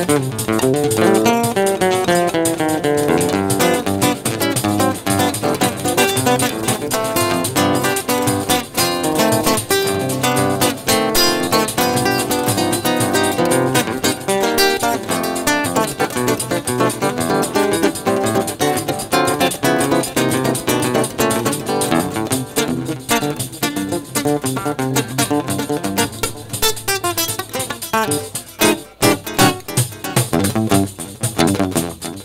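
Acoustic guitar (violão) played live in a busy plucked and strummed passage with no singing. Near the end, sharp hand strikes of a pandeiro join in.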